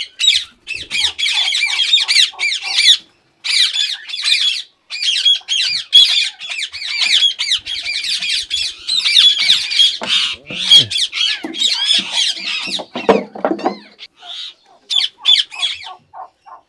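Indian ringneck parakeets squawking: a dense run of short, shrill, harsh calls repeated in quick succession, with a few brief gaps and thinning out past the middle.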